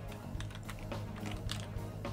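Typing on a computer keyboard: a quick, irregular run of key clicks as a short phrase is typed.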